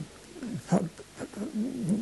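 An elderly man's hesitant, wordless vocal sounds between phrases: a few short murmured 'mm' and 'er' noises with gliding pitch, broken by pauses.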